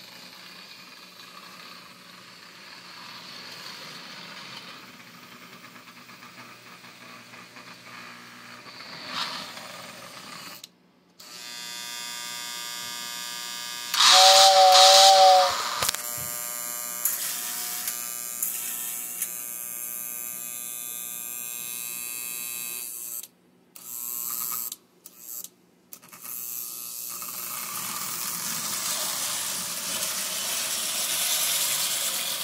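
Lionel O27 toy steam locomotive running on its track, its electric motor and gears giving a steady whine. About halfway through, its whistle blows a two-tone note for about two seconds, the loudest sound. The running sound cuts out briefly a few times near three quarters of the way through.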